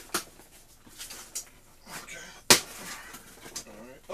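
A cardboard box being handled and opened, its flaps scraping and rustling. A sharp click comes just after the start, and a louder snap about two and a half seconds in.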